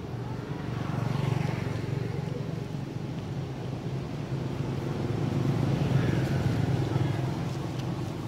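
Motor vehicle engines passing on a nearby road: a steady low hum that swells about a second in and again around six seconds, then fades.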